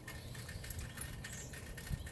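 Faint steady low background rumble, with a single light click near the end.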